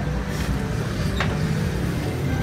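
Steady low rumble of a motor vehicle engine on the street, with a brief faint high click about a second in.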